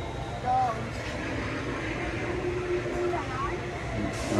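Steady low hum of a large store's interior, with a short voice sound about half a second in and faint voices in the background. No animatronic prop is heard starting up.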